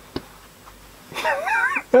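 A sharp click shortly after the start, then a high-pitched, wavering squeal of laughter from a person that runs into speech.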